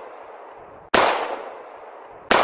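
An edited-in impact sound effect, like a gunshot or boom. One sudden sharp hit comes about a second in and fades away slowly over the next second, after the fading tail of an earlier hit.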